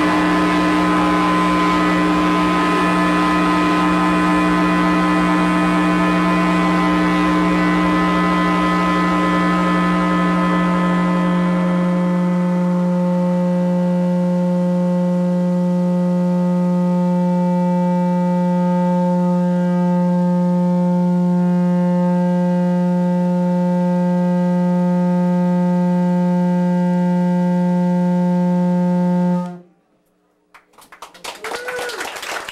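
Loud modular synthesizer drone: a steady low tone with a stack of overtones, gritty and noisy for the first dozen seconds, then thinning to clean, held tones. It cuts off suddenly near the end.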